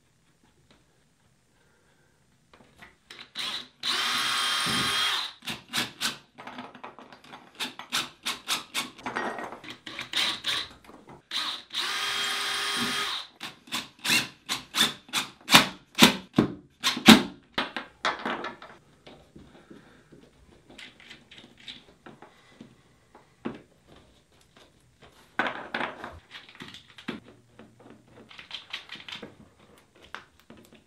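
Cordless drill running in two short bursts of about a second each against the wall, with a run of sharp clicks and knocks around and after them, loudest in the middle, as screws and mounting hardware go in.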